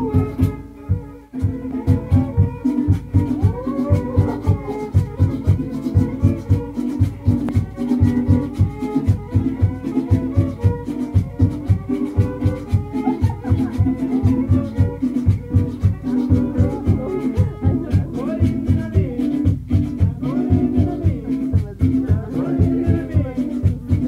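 Live traditional Latin American folk music: a bowed string melody with sliding notes over a held low note and a steady beat of about three strokes a second. It dips briefly about a second in, then carries on.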